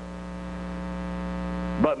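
Steady electrical mains hum, buzzy with a long row of even overtones, slowly growing louder during a pause in speech. A man's voice comes back in just at the end.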